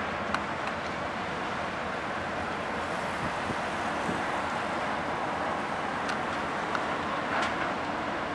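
Steady churning noise of the Blue Star Paros car ferry manoeuvring in the harbour, its propellers and thrusters stirring up heavy wash, with a few faint clicks.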